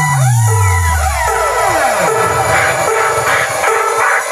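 Electronic DJ music played loud through a trailer-mounted stack of speaker cabinets (a DJ sound box). Two long downward pitch sweeps slide down in the first two seconds, then a pulsing beat takes over.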